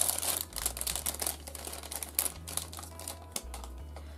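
Clear plastic packaging of small refillable plastic glue bottles being opened and handled by hand: a run of crinkles and small clicks, densest in the first half second, then scattered clicks.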